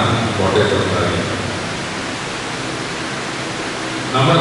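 A man's voice over a loudspeaker for about a second, then a pause filled by a steady, even hiss of background noise until the talk resumes at the very end.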